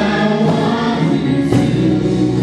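Choir singing gospel music over sustained chords. A low bass comes in and the chord changes about one and a half seconds in.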